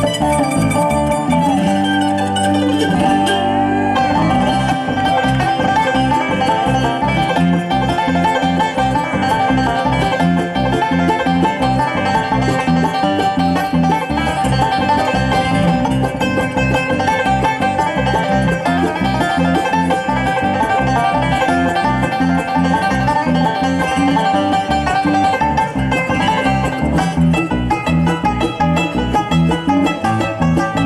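Bluegrass band playing an instrumental passage with no singing. A mandolin is picking the lead at the start, and a five-string banjo is picking the lead later on, over the band's rhythm.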